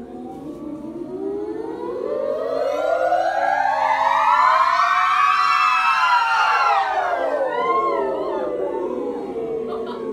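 A class of students' voices sounding together in one long pitch glide, rising steadily from the middle of their range to a high peak about halfway through, then sliding back down. Loudest at the top, with a few voices wavering as it ends. It is a vocal range warm-up.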